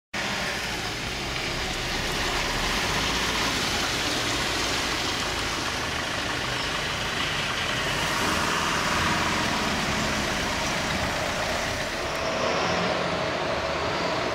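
Heavy diesel lorries running and passing, a steady din of engine and road noise with no break.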